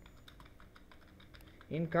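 Typing on a computer keyboard: a quick run of soft key clicks as a short phrase is typed. A man's voice starts near the end.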